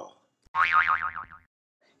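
Cartoon "boing" sound effect: a single springy tone whose pitch wobbles up and down rapidly for about a second, starting about half a second in.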